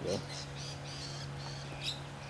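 Birds chirping in the background, a quick run of short high calls, over a steady low hum.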